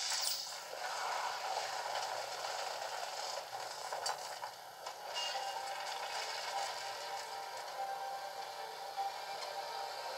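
Animated-film soundtrack heard through a portable DVD player's small tinny speaker: a wooden house creaking and rattling as it tears loose from its foundations, with music underneath.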